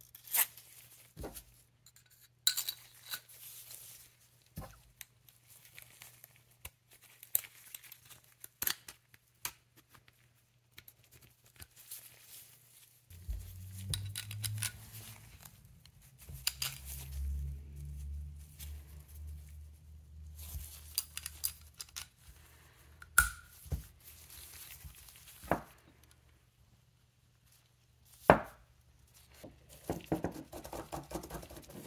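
Steel parts of a Carcano rifle bolt being fitted back together by gloved hands: the firing pin, its coil mainspring and the bolt body. Scattered sharp metal clicks and clinks, with glove rubbing and a low rumble of handling noise through the middle stretch.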